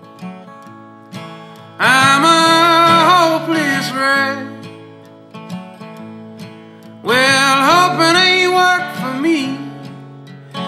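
Acoustic guitar strummed, with two loud harmonica phrases of bending notes, the first about two seconds in and the second about seven seconds in, each lasting about two seconds.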